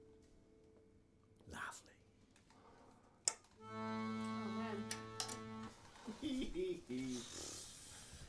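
After a quiet stretch and a sharp click, an accordion sounds one steady held chord for about two seconds, then stops. Quiet voices talk near the end.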